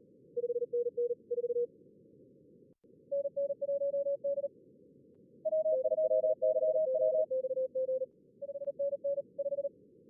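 Fast Morse code (CW) contest exchanges at about 38 words per minute, generated by contest-logging software's practice mode: short runs of keyed beeps at two slightly different pitches, one per radio, overlapping in the middle, over a steady narrow band of simulated receiver hiss.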